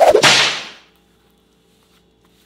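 A whip-like swoosh sound effect: one sharp swish that hits suddenly and fades out within about a second.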